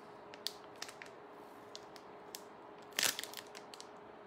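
Plastic packaging crinkling with small scattered clicks as a bagged earring is unwrapped, with one louder crackle about three seconds in.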